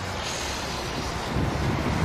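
Steady wind noise on the microphone with a low rumble underneath, the rumble swelling a little past the middle.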